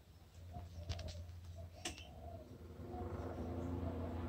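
Portable fridge switched on as the load for a battery discharge test, running with a steady low hum that grows louder about three seconds in. Faint short cooing notes repeat in the background.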